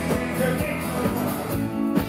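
Live folk-rock band playing with a steady drum beat, acoustic guitar and voices singing.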